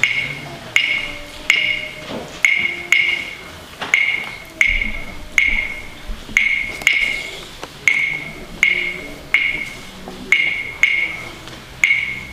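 A pair of claves played in a repeating syncopated rhythm: one dry, bright wooden click with a short ring on each strike, with the strikes spaced unevenly, about half a second to a second apart.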